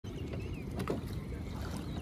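Steady low rumble of wind on the microphone over open water, with a faint high gliding call about half a second in.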